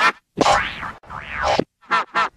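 Two electronically warped, boing-like cartoon sound-effect sweeps, one after the other, each rising and then falling in pitch over about half a second.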